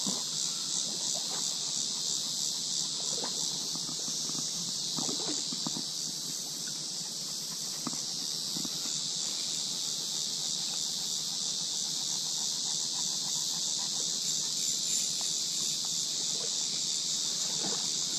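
Steady, high-pitched drone of a summer insect chorus from the trees, unbroken and even in loudness.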